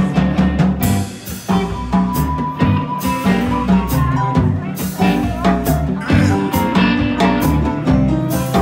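Live electric blues band playing an instrumental passage: electric guitars, electric bass and drum kit, with a lead note held for a few seconds in the first half.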